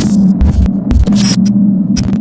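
Electronic sound effects of an animated logo intro: a loud, steady low drone with two deep bass hits in the first second and short high hissing sweeps after them.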